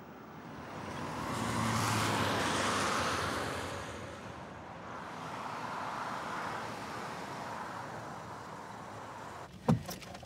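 A car passing by, its engine and tyre noise swelling and fading over about three seconds, followed by a second, fainter vehicle passing.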